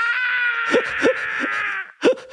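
A single long, drawn-out cat-like meow, sliding slightly down in pitch before it cuts off near the end.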